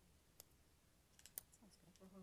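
Near silence with a few faint, sharp clicks: one about half a second in, then a quick run of several around a second and a half.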